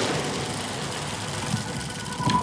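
Steady, rumbling electronic whoosh from an outro sting's sound design, with no clear melody.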